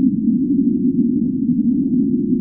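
A steady, loud low rumble, muffled, with nothing high-pitched in it and no clear beat.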